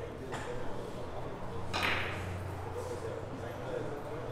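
Carom billiard balls clacking on a three-cushion table: one sharp clack about two seconds in, with a fainter click early on.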